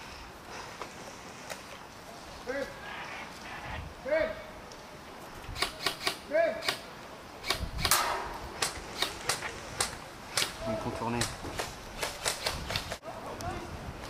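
Airsoft guns firing sharp single shots in an irregular string of snaps and cracks, starting about five seconds in and running until near the end, with short shouted calls in between.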